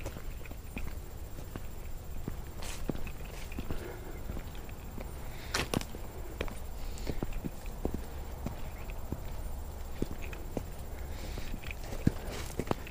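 Footsteps walking through grass on a path, with rustling and small irregular crunches and clicks; a couple of louder sharp clicks come about three and six seconds in.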